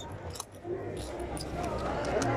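A cloth wallet being rummaged through by hand for cash, with soft rustling and a few faint light clicks, under a low murmur of voices.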